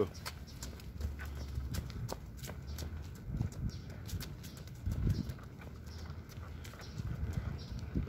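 Jogging footsteps on a concrete sidewalk, a run of short knocks, with low rumbling from the handheld phone's microphone bouncing along as it runs.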